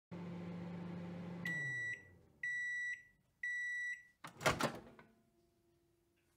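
Microwave oven running with a steady hum that winds down as its cycle ends, then three half-second beeps about a second apart signalling the timer is done. A loud clunk of the door being opened follows about four seconds in.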